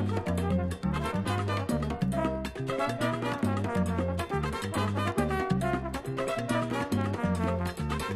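Cuban son played by a dance band with brass: an instrumental passage without singing, over a steadily repeating bass line.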